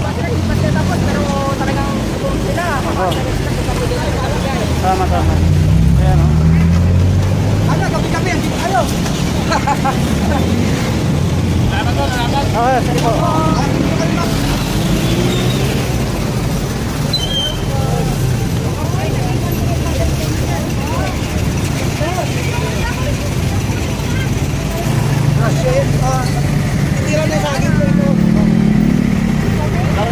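Steady low rumble of street traffic and vehicle engines, with indistinct voices talking underneath.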